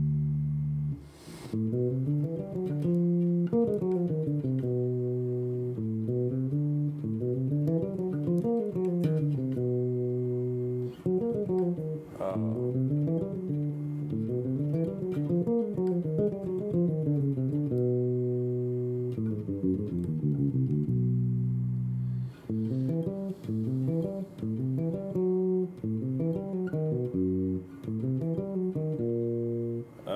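Solo electric bass, a Squier Classic Vibe '60s Jazz Bass, played fingerstyle: flowing single-note bebop lines running up and down arpeggios and scales, with a few brief breaks. These are improvised melodic variations built on a ii–V–I lick in G major.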